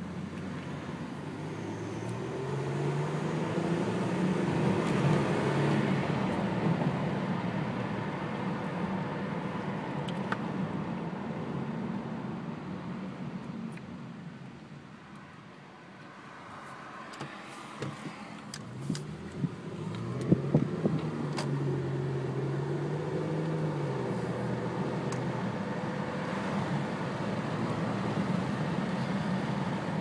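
A stock 2003 Toyota Camry's engine, heard from inside the cabin, revving hard under full-throttle acceleration: the note climbs in pitch, holds high, then drops back as the throttle is lifted. This happens twice, once in the first few seconds and again from about 19 s in, with quieter running in between. A few sharp clicks come just before and during the second pull.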